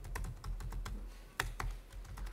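Typing on a computer keyboard: an irregular run of quick key clicks, one keystroke louder about a second and a half in.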